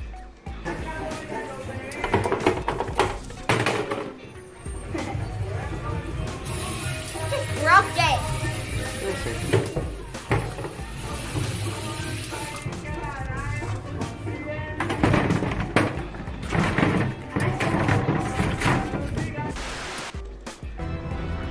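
Voices and music from a played video clip, with a steady hiss in the middle from a bathroom faucet running water into a sink.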